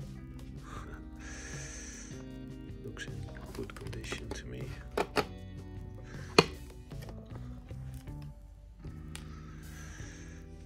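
Background music plays throughout. About five seconds in come two knocks, then a single sharp click: a metal micrometer being set into its wooden case and the case closed.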